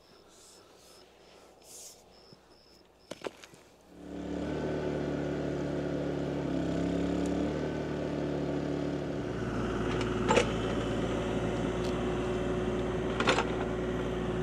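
Quiet for the first few seconds, then the diesel engine of a Kubota mini excavator comes in about four seconds in and runs steadily, its pitch shifting a little, with two sharp knocks in the last few seconds.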